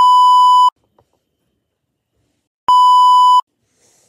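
Two loud, steady test-tone beeps of one pitch, each lasting about three-quarters of a second, the second starting nearly three seconds in. This is the bars-and-tone beep edited in with a colour-bars screen.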